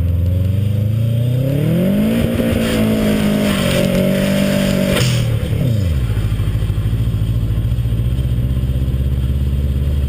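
Subaru WRX's turbocharged flat-four engine revving up over about two seconds, held at high revs for about three seconds, then dropping back and settling into a steady lower drone.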